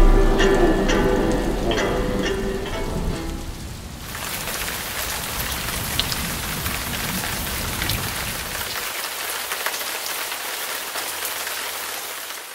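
A band's music fading out over the first few seconds, then a sudden switch to steady rain falling, with scattered drop ticks; the rain fades away near the end.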